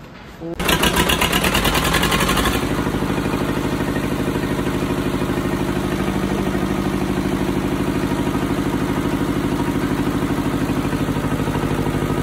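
An air-cooled diesel generator engine starts about half a second in, runs hard and loud for about two seconds, then settles into a steady, evenly pulsing run.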